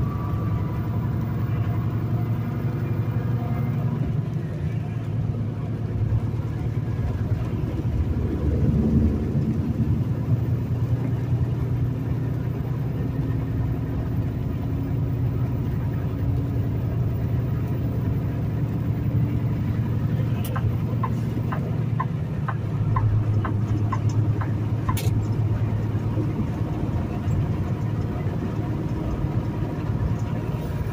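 Semi-truck heard from inside the cab while cruising on the highway: a steady low engine and road rumble, with a short run of evenly spaced clicks a little past two-thirds of the way through.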